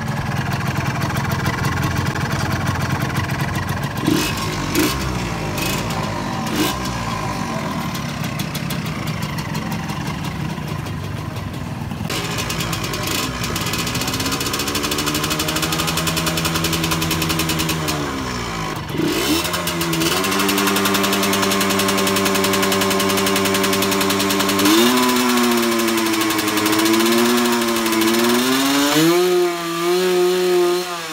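Yamaha motorcycle engine running rough for the first dozen seconds, with a few knocks. It is then revved up and back down, held at a steady higher rev, and blipped up and down near the end.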